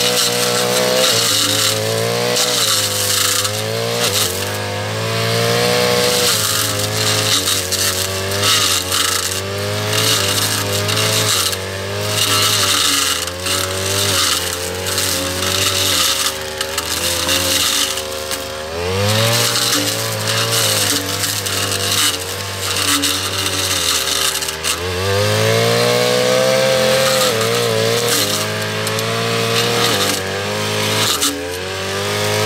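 Backpack brush cutter's small petrol engine running at high revs as its blade cuts through grass and vines. The engine speed drops and climbs back up twice, near the middle and again later on.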